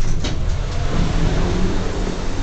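Motor vehicle traffic: a steady low engine rumble with road noise, rising in as the elevator door opens onto the street-level garage.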